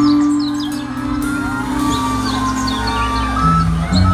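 Live band playing a slow song: held keyboard and bass notes changing chord every second or so, with a melody line above and short high chirping glides scattered over the top.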